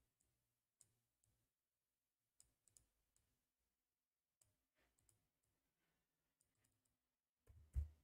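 Faint, scattered computer mouse and keyboard clicks over near silence, with one louder click near the end.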